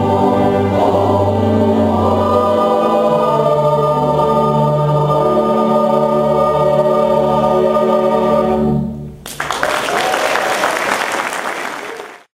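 Mixed choir and string orchestra (violins, viola, cello, double bass) holding a final chord, which stops about nine seconds in. Audience applause follows and fades out near the end.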